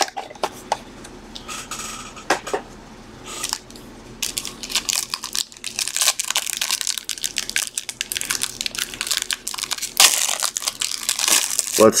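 Foil wrapper of a trading-card pack crinkling and tearing as it is ripped open, a dense crackle from about four seconds in, after a few scattered clicks of the pack being handled.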